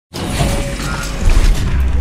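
Sound-designed intro sting of mechanical gears: clattering, ratcheting metal over a deep booming rumble that swells in the second half. It starts abruptly.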